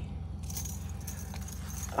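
Small metal jingle bells on a pair of hoop earrings jingling lightly as they are handled, starting about half a second in.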